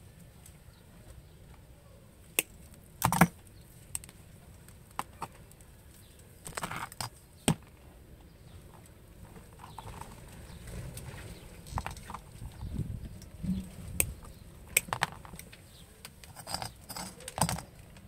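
Scattered sharp clicks and taps with some soft rustling, from lengths of braided cable being handled and laid down on a rubber mat.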